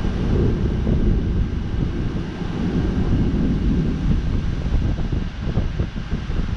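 Storm wind gusting across an action camera's microphone ahead of an approaching thunderstorm: a low, rumbling buffeting that swells and eases.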